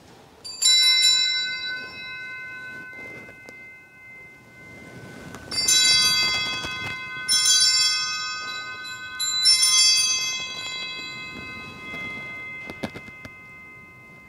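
Hand-rung sacring bells at the altar, rung four times: once near the start, then three more times about two seconds apart. Each ring leaves a bright chord that dies away slowly. The ringing marks the consecration and elevation of the chalice at Mass.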